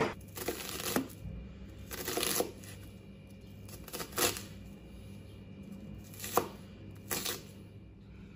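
Food-prep handling sounds: a knife knocks once on a wooden cutting board at the start, then a few separate scraping rustles and short taps as minced pork and chopped onion go into a glass bowl.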